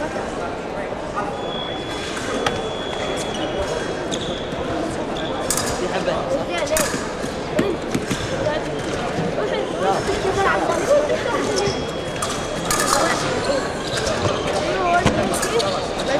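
Busy, echoing sports-hall background: several people's voices talking at once, with scattered sharp clicks and knocks on top and a faint high steady tone coming and going.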